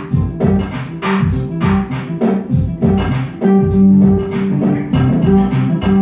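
Live band playing: guitar and bass notes over a steady beat of sharp percussive hits.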